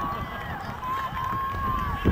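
Voices calling out long, drawn-out shouts at an outdoor soccer game, over a steady low rumble of wind on the microphone.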